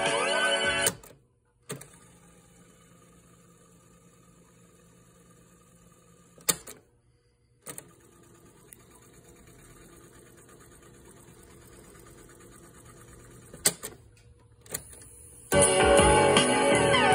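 National Panasonic RX-5700 boombox cassette deck: tape music playing stops with a sharp piano-key click. The tape then winds fast forward with a faint motor whir, clicks to a stop, and rewinds with a whir that grows slightly louder. More key clicks follow, and the music starts again near the end.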